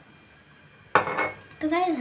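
Kitchenware clanking once, sharply, about a second in, with a brief ringing tail.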